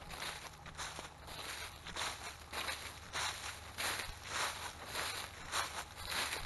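Footsteps crunching and rustling through dry fallen leaves at a steady walking pace, about a step every half second.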